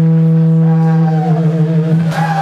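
Distorted electric guitar holding one long sustained note, its upper overtones wavering and bending a little way in.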